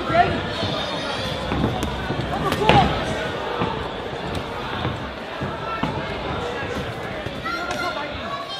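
Repeated dull thuds from a boxing ring: boxers' feet and gloves on the ring canvas and ropes during a bout, mixed with voices shouting from ringside.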